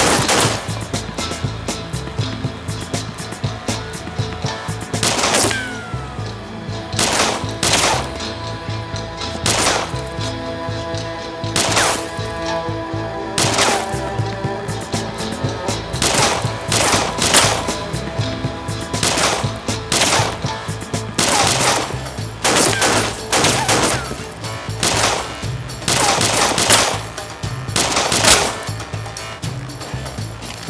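Gunfight: a long exchange of gunshots, single shots and quick clusters coming at irregular intervals, each one sharp with a short ringing tail.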